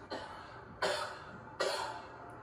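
A man coughing three times, short sharp coughs about 0.8 seconds apart, the last two louder than the first.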